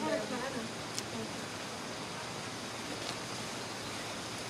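Steady, even rushing background noise outdoors, with a brief voice at the start and a single short click about a second in.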